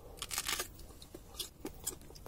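A hard, not yet fully ripe Forelle Alessia pear being bitten and chewed: a few short, crisp crunches, the loudest about half a second in.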